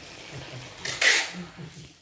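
A single short, loud burst of hissing noise about a second in, lasting about half a second.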